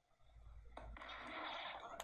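Quiet room tone: a faint low hum with a soft hiss that grows slightly, after a brief dead-quiet dropout at the start.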